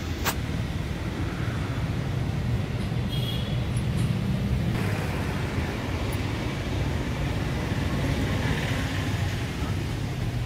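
Steady low rumble of road traffic, with a sharp click right at the start.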